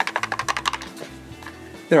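Playing cards and a card case being handled: a rapid run of light clicks for about a second, then quieter, over soft background music.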